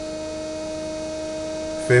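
Bedini-style pulse motor with a 24-pole magnet rotor running at about 1560 RPM with its generator coil shorted, making a steady hum with a tone near 620 Hz and a weaker, lower one. Here it is going like crazy, sped up by the short on the coil.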